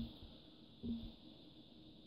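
Quiet room tone with a faint steady hiss, broken by one brief soft low sound about a second in.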